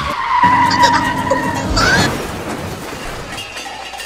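A car with its tyres skidding: a long squeal over the engine's hum, then a short rising squeal about two seconds in, followed by a fading rush of noise.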